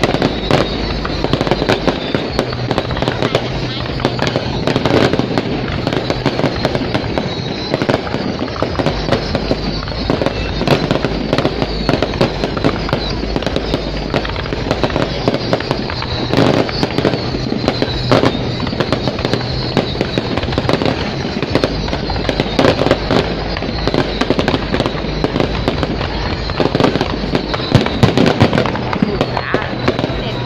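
Many fireworks going off at once: continuous rapid crackling and popping, with frequent sharper bangs throughout.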